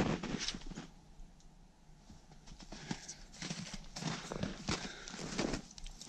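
Snowshoe footsteps in snow at a walking pace, a run of short noisy steps with a brief lull about a second and a half in.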